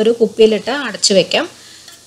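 A woman speaking for about a second and a half, over a metal ladle stirring chunky mango pickle in thick chilli gravy in a steel pan.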